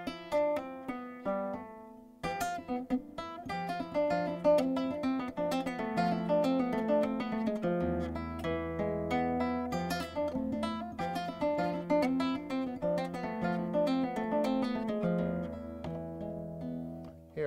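Nylon-string flamenco guitar playing a fast legato passage: runs of notes sounded mostly by left-hand hammer-ons and pull-offs, with thumb notes plucked together with them. A brief break about two seconds in; from about halfway a low bass note rings under the run.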